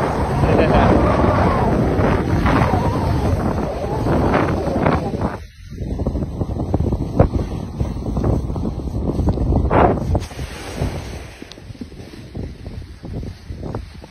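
Wind buffeting a phone's microphone as it moves down a ski slope, a loud rough rushing that cuts out briefly about five and a half seconds in and falls to a lower hiss after about ten seconds.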